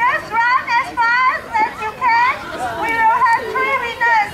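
Young children's high-pitched voices talking and calling out, one after another, without a break.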